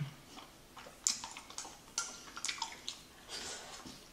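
Close-up wet chewing of a mouthful of chewy rice cakes and fish cake: a scatter of short, moist clicks and smacks from the mouth.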